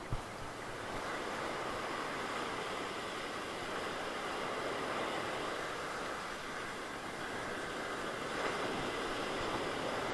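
Ocean surf breaking and washing up a sandy beach: a steady rushing wash that swells a little through the middle, with a short tap just after the start.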